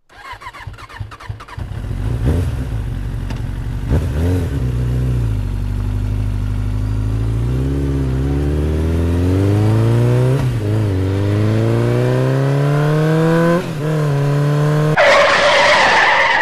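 Motorcycle engine starting and pulling away, its pitch climbing through the gears with short drops at each gear change. A loud, harsh screeching noise cuts in about a second before the end.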